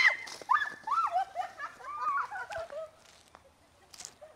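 Several women shrieking and yelping in fright: a run of short, high, rising-and-falling cries that die away about three seconds in.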